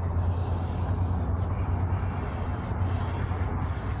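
Marker rubbing and scratching on paper as a shadow's outline is traced, over a steady low hum.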